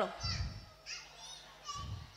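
Faint children's voices chattering and calling in the background, with two dull low thumps, one about a quarter second in and one near the end.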